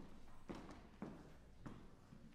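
Footsteps on a wooden stage floor, about one step every half second, faint.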